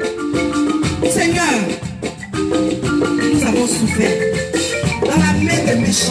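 Loud, amplified praise-and-worship music with a bright mallet-like melody over steady percussion, and a woman's voice through a microphone on top.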